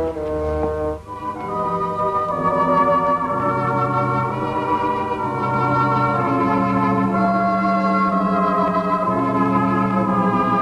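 Dramatic background music on an organ: slow, held chords that shift every second or two, after a brief dip about a second in.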